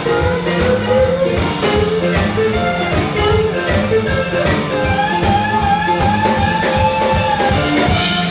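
Live boogie-woogie blues band playing: piano over a steady drum beat, with a long held higher note entering about five seconds in.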